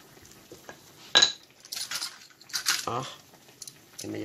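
Kitchen utensils being handled: a sharp ringing clink about a second in, then two rougher clatters.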